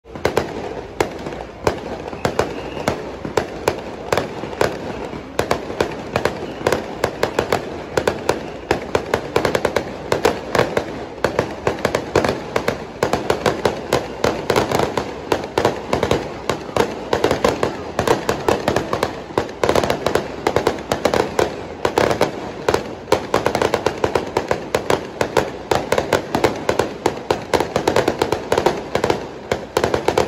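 Fireworks and firecrackers going off without a break: a dense, rapid barrage of sharp bangs and crackles, with louder bursts scattered through it.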